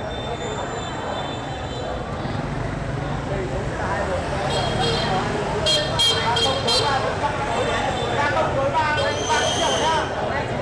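Street crowd chatter over traffic rumble, with several short horn toots about halfway through and another near the end.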